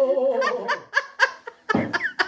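Hearty laughter in quick, breathy bursts, several a second, after a drawn-out vocal 'oh' that fades in the first half-second.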